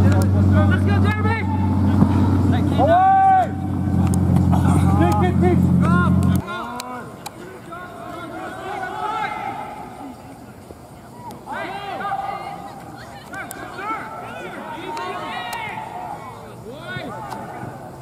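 Players and spectators shouting across an outdoor soccer field, short calls that are too distant to make out. For the first six seconds or so a steady low hum runs underneath, like a nearby engine running, and it cuts off suddenly.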